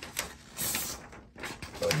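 Sheet of paper being torn by hand: a short ripping tear just past halfway, with paper rustles and clicks around it.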